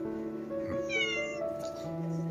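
A cat gives one short, high meow about a second in, over steady background music.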